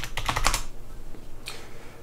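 Computer keyboard being typed on as a password is entered: a quick run of key clicks in the first half second, then a single keypress about a second and a half in.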